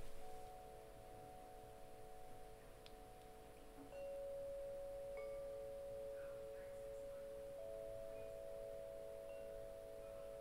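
Soft background music of a few pure, sustained tones held together, with a louder note coming in about four seconds in and another, higher one a few seconds later.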